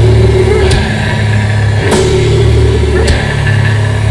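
Live extreme-metal band in a slow, heavy passage: distorted guitar and bass hold a low, droning chord, with a cymbal crash about every second and a bit.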